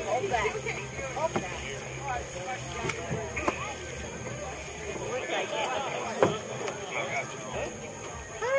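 Indistinct voices of people talking, with a low steady hum under the first few seconds and a few sharp knocks, the loudest about six seconds in.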